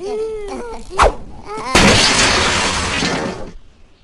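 A cartoon Minion's jabbering voice, then a sharp hit about a second in, followed by a loud, noisy crash sound effect that lasts nearly two seconds and then stops.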